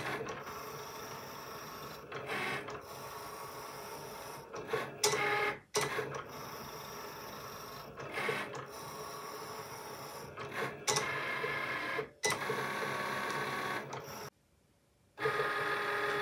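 Cricut Explore cutting machine cutting print-then-cut sticker sheets: its motors whir as the blade carriage runs across and the mat feeds back and forth, the pitch changing with each stroke. There are a few brief breaks, and about a second of silence near the end.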